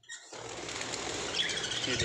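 A flock of budgerigars fluttering their wings, a steady rush of wing noise, with short high chirps joining in about halfway through.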